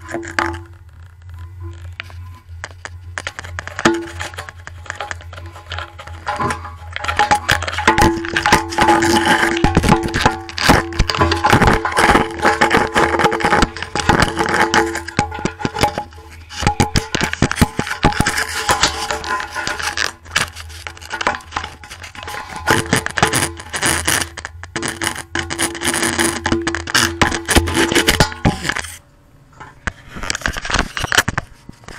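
Camera knocking and scraping against the inside walls of an empty steel motorcycle fuel tank as it is moved around: a dense, irregular run of clicks and clunks, over music playing in the background.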